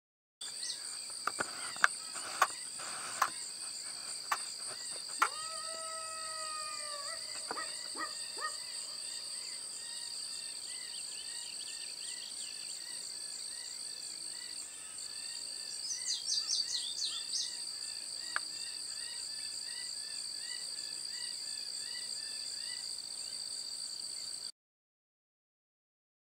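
Insects chirring in two high, unbroken tones over a field, with birds calling. A few sharp clicks come in the first few seconds, a drawn-out pitched call sounds for about two seconds a little after five seconds, and a quick run of rising chirps comes near the sixteen-second mark.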